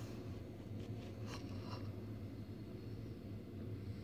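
Steady low hum of room noise, with a couple of faint soft rustles between one and two seconds in.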